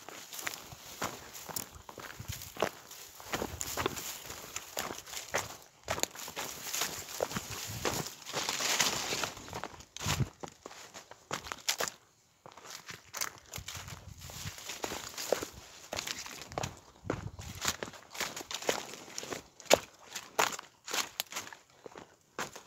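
A person walking through dense scrub and dry grass: irregular footsteps with leaves and stems brushing and crackling against them, stopping and starting with short pauses.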